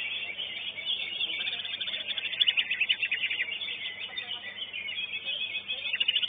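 Cucak ijo (greater green leafbird) singing a fast, unbroken string of high chattering notes, with a louder rapid trill about two and a half seconds in. The sound is thin, through a narrow-band CCTV microphone.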